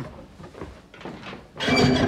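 Faint knocks and scrapes as a cellar hatch is shut and its handle turned. Music starts suddenly and loudly about a second and a half in.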